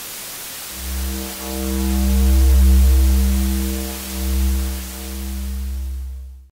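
Outro music: a soft hiss with a deep, sustained bass drone and a held chord entering just under a second in. It swells to a peak in the middle, dips, swells again briefly and fades out.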